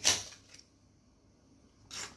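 A brief papery rustle of a tarot card being pulled from the deck, right at the start, followed by quiet room tone.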